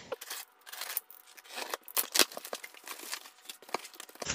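Box cutter slicing through packing tape on a cardboard box and the cardboard flaps being pulled open: faint scattered scrapes, clicks and rustles.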